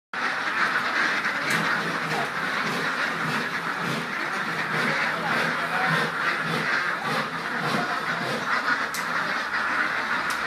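A flock of itik ducks quacking all at once, a dense, unbroken chatter of many birds.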